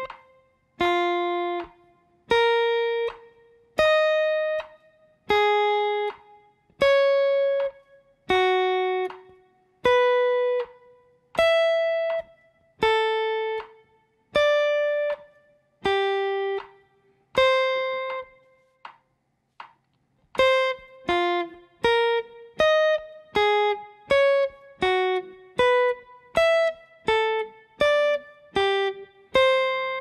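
Electric guitar playing single notes on the high E string, stepping through the circle of fourths (C, F, B flat and on), as a fretboard note-finding exercise. The notes come about one every 0.8 s, then after a short pause about two a second, over a metronome click.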